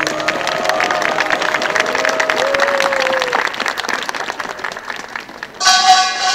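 Audience applauding, the clapping thinning out toward the end. Just before the end, Korean traditional music starts up loudly.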